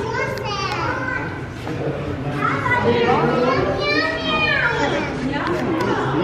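Several children's voices talking and calling out at once, high-pitched and rising and falling, with no single voice standing out.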